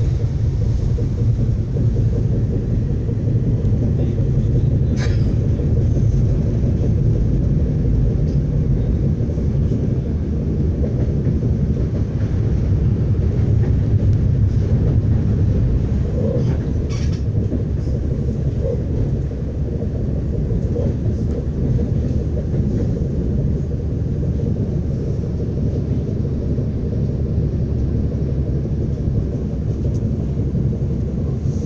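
Steady low rumble inside a passenger car of an ES2G Lastochka electric train running along the track. Two faint clicks come through, about five and about seventeen seconds in.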